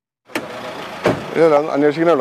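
After a moment of dead silence, outdoor noise starts with a click, a single sharp knock about a second in, then a man talking.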